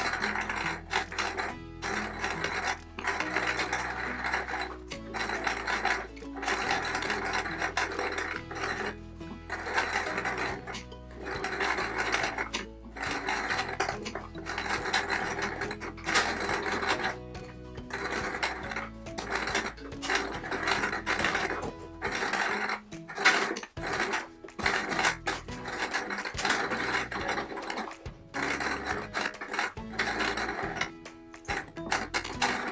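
Domestic electric sewing machine stitching in runs of a second or two, broken by short pauses as the fabric is turned, with background music underneath.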